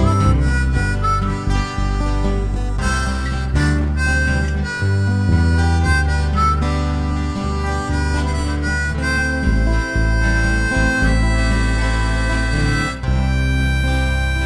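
Instrumental break in a slow country song with no singing: a harmonica plays the lead melody over guitar and a bass line.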